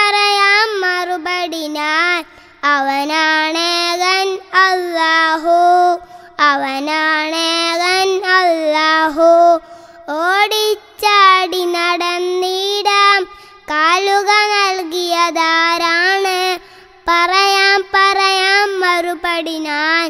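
A child singing a Malayalam song in praise of Allah solo, in long held phrases with a wavering vibrato, breaking for breath about every three to four seconds.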